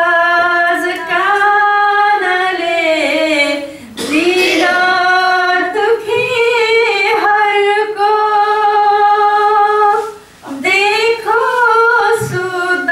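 Female voice singing a Nepalese song into a handheld microphone, in long held phrases that bend and glide in pitch, with two brief breaks for breath about four and ten seconds in.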